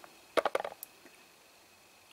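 A quick cluster of small plastic clicks about half a second in, as a squeeze bottle of hydrochloric acid is squeezed through its tube onto the crystal.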